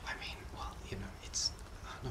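Only speech: quiet, soft talk in a lull in the conversation, with a hissed 's' sound about halfway through.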